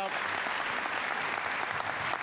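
Large indoor audience applauding steadily.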